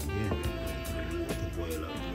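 Background music with a beat and sustained notes.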